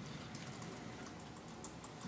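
Faint typing on a laptop keyboard: light key clicks at irregular intervals over a low, steady room hum.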